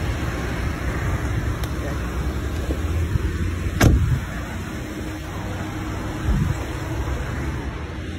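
A car door shutting with one sharp bang a little under four seconds in, over a steady low rumble, with a smaller thump a couple of seconds later.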